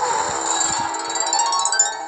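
Story-app music and magic effect: a bright, twinkling shimmer over held tones that starts suddenly and fades away near the end.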